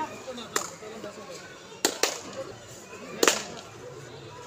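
Four sharp hand slaps from kabaddi players during a raid: one about half a second in, a quick pair near two seconds, and the loudest a little after three seconds, with faint voices in the background.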